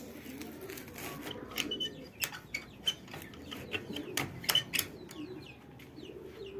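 Small birds chirping in short high notes, with a series of sharp taps and clicks, the loudest a cluster about four to five seconds in.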